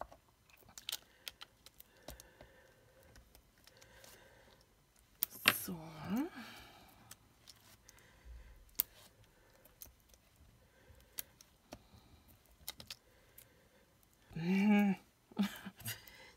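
Sparse light clicks and taps of small 3D foam adhesive pads being picked off their backing sheet with a pointed craft tool and pressed onto a paper die-cut on a cutting mat. A short spoken word comes about five seconds in, and more speech near the end.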